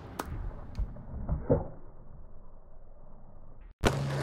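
A few muffled knocks and thumps, the loudest about a second and a half in, then the sound cuts off abruptly near the end and a sharp click follows.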